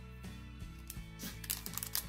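Quiet, steady background music. A little over a second in, light crinkling and clicking of plastic packaging begins as the bagged shaker mold is picked up.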